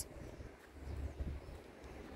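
Quiet outdoor background with a faint low rumble of wind on the microphone and a few faint scattered taps.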